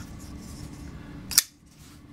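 Koenig Arius flipper folding knife flicked open: after some faint handling noise, the blade swings out and locks with a single sharp metallic snap about one and a half seconds in.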